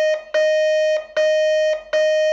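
Morse code tone sending the digit 9 (dah-dah-dah-dah-dit). Here the long dahs sound, each a steady buzzy beep about half a second long with short gaps between.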